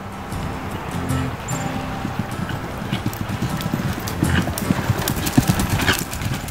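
Hooves of a line of horses walking on a dry dirt trail, a dense run of clip-clops that grows louder toward the end. Background music plays underneath.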